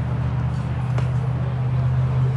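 A steady low hum, with a faint single click about a second in.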